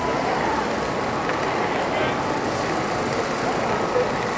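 Busy pedestrian street ambience: a steady hum of traffic with indistinct chatter from passers-by.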